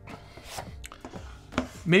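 Cardboard product box handled on a tabletop: a few light knocks and scrapes as it is moved and opened.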